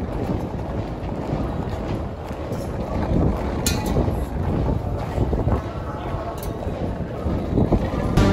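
Wind rumbling over a phone microphone outdoors, with a murmur of crowd voices and a couple of sharp clicks, one a little past the middle and one later.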